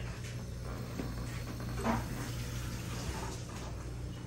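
Steady room background of a fish room: the low, even hum of aquarium air pumps with a faint watery hiss. A brief small sound comes about two seconds in.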